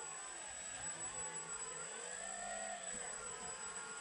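Twin Turnigy 2826 2200 kV brushless motors spinning their propellers at low power. Their whine rises and falls in several crossing glides as the rudder stick, set to low rates, drives differential thrust, one motor speeding up while the other slows.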